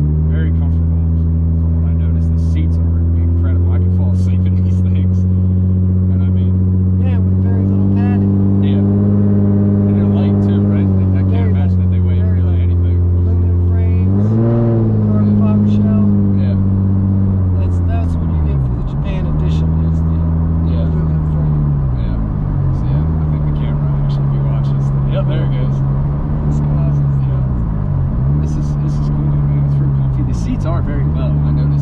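Nissan 350Z's 3.5-litre V6 heard from inside the cabin under way, a steady engine note that climbs slowly with speed. The pitch rises and falls once about halfway, then dips sharply and recovers several times in the second half as the revs change.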